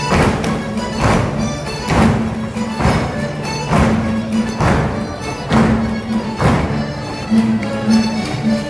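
Traditional Portuguese folk-dance music, lively and steady, with a heavy thump on the beat about once a second.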